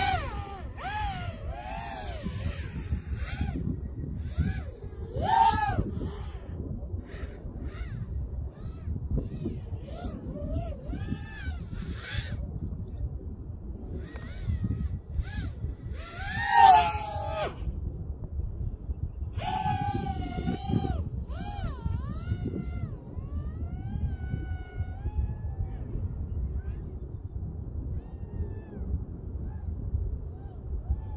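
Small FPV quadcopter's brushless motors (HGLRC Aeolus 1603 2800KV) whining, the pitch swooping up and down as the throttle changes. It is loudest about 16 seconds in and fainter over the last several seconds, over a low rumble of wind on the microphone.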